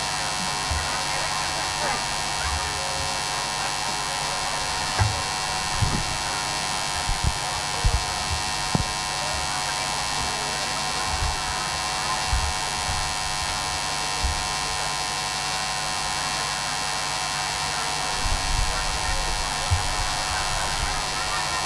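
Steady electrical mains hum with hiss, with scattered short low thumps, the loudest between about five and nine seconds in and again near the end.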